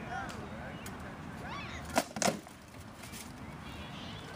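Two sharp blows about a quarter second apart, near the middle: rattan weapon strikes landing in armoured SCA heavy-combat sparring.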